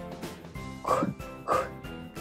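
Soft background music with steady held notes, broken by two short sounds about a second and a second and a half in.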